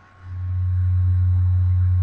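A steady, deep electrical hum, one low tone that swells in over the first moment and then holds level.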